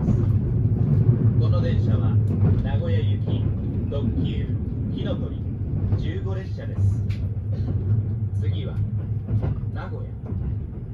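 Kintetsu Hinotori limited express train running at speed, a steady low rumble heard inside the passenger cabin. Indistinct voices of people talking are heard over it.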